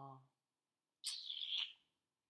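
A man's held 'uh' trailing off, then about a second later a short, breathy, high-pitched sound from his mouth, lasting under a second.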